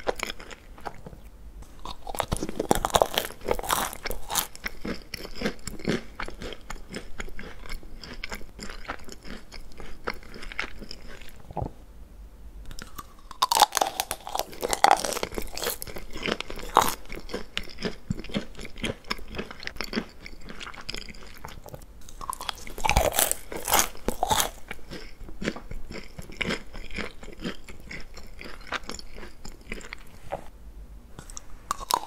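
Close-miked eating of Dickmann's chocolate-coated marshmallows: the thin chocolate shell crackles and crunches as it is bitten and chewed, with softer chewing between the bites. There are three bursts of louder crunching: a few seconds in, around the middle, and about three-quarters through.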